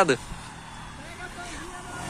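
125 cc pushrod single-cylinder motorcycle running as it approaches, faint and distant, growing slightly louder toward the end.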